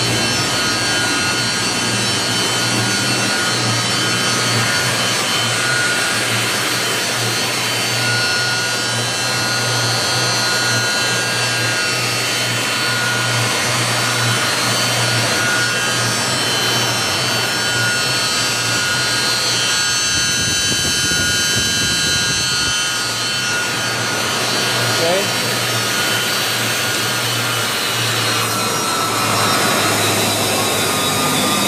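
Urschel Comitrol 2100 food processor running on test: its electric impeller and feed motors give a steady hum with several high, even whining tones over it.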